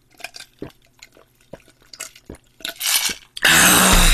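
A person gulping a drink from a plastic cup, the swallows coming about every half second, followed near the end by a loud burst of noise.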